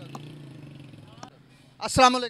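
A vehicle engine hums steadily in street traffic and fades away over about a second and a half, with a couple of small clicks. A man's voice starts near the end.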